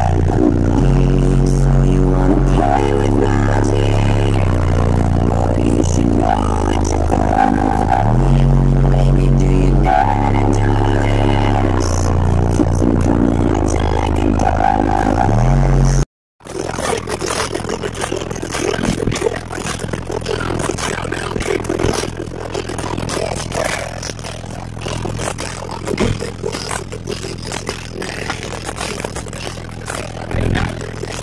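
Car audio system with four Sundown Audio ZV4 15-inch subwoofers playing bass-heavy music at very high volume, deep bass notes changing every couple of seconds. After a sudden cut about halfway, a steady deep bass drone continues under scraping and rattling noise.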